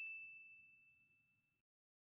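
The ringing tail of a bell-like ding: one clear high tone dying away over about the first second and a half, then silence.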